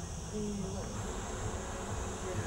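Steady, high-pitched chorus of insects chirring, a little louder from about a second in, over a low rumble, with faint voices in the distance.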